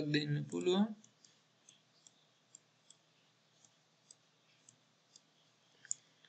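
Faint computer mouse clicks, roughly two a second, with a slightly louder pair of clicks near the end.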